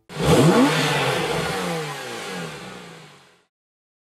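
A car engine revs sharply up and then winds down with a rushing whoosh, dying away after about three seconds.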